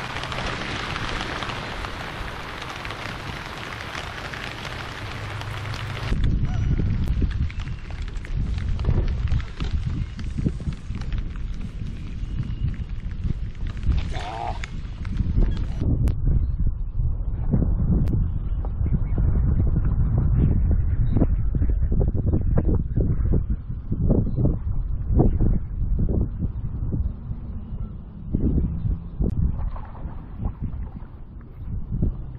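Rain falling steadily on the water and the boat, an even hiss. About six seconds in it gives way abruptly to wind buffeting the microphone, a low gusty rumble.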